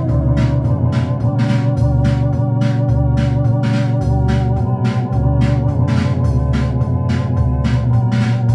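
Two-manual electronic home organ being played: sustained chords over a stepping bass line, with a steady, quick drum-machine beat of cymbal ticks from its rhythm accompaniment.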